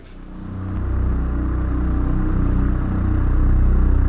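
A low, steady, engine-like drone with a fine rapid pulse, fading in over the first second.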